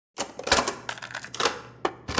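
Plastic clicks and clacks of a cassette being handled and pushed into the tape door of a National Panasonic portable cassette recorder: a rapid, irregular run of sharp clicks.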